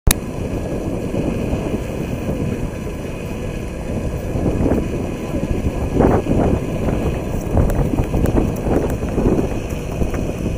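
Crowd voices outdoors over a steady low rumble, with a few louder voices about six seconds in.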